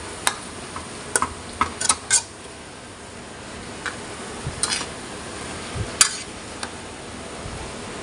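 Metal tongs clinking and scraping against a metal wok as stir-fried noodles are tossed, in irregular sharp knocks over a steady hiss.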